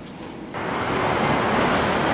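Steady road-traffic noise from motorcycles and cars crossing a bridge, starting abruptly about half a second in.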